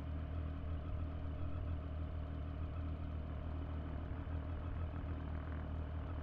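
Motorcycle engine idling, a steady low even hum.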